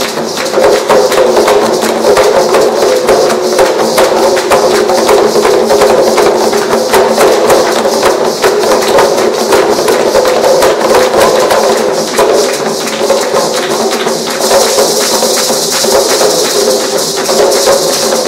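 Several hand drums struck by hand in a fast, continuous rhythm, with maracas shaken along in a steady high rattle.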